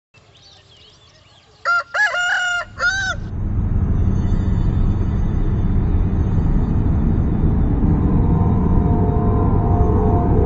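Faint bird chirps, then a rooster crowing once about two seconds in. A steady, low drone of background music then swells in and holds.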